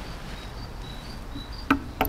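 Quiet outdoor ambience with faint, short, high-pitched chirps from an insect or small bird, and a single sharp knock near the end.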